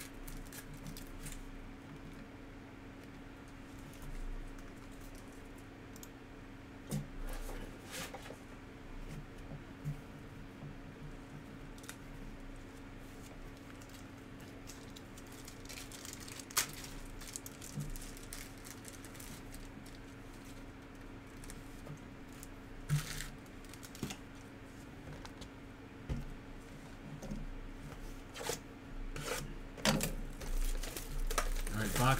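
Faint handling of trading cards and plastic card holders on a tabletop: scattered light clicks, taps and brief rustles over a steady low hum.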